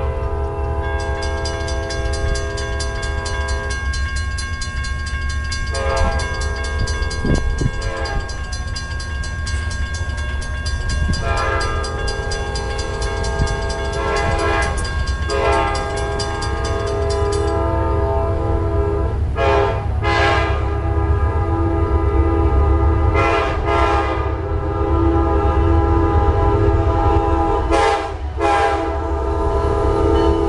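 An approaching Amtrak GE P42DC passenger locomotive sounds its air horn in a series of long blasts for a grade crossing. The crossing's warning bell rings rapidly until the gates are down, about two thirds of the way through, and a low rumble of the train builds toward the end.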